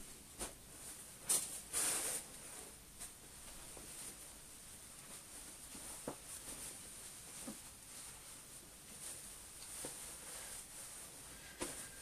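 Faint rustling and a few light clicks as a suit jacket is handled and folded, the loudest in the first two seconds and the rest scattered and soft.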